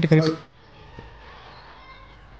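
The end of a drawn-out, wavering voice that cuts off suddenly about half a second in, followed by faint room tone.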